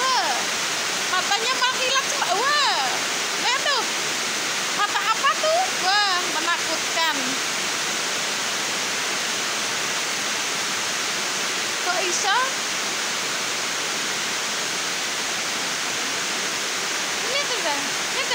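Steady hiss of rain throughout, with cats mewing over it: a run of short rising-and-falling mews in the first seven seconds, another about twelve seconds in, and more near the end.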